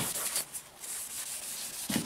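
A cloth rag rubbing wood restorer into the wooden stock of a Remington No. 4S rolling block rifle. It makes a hissing scrub that rises and falls with the strokes.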